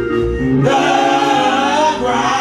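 Gospel singing by a small praise team of one man and two women, with steady accompaniment underneath. The voices swell louder about half a second in and hold long notes.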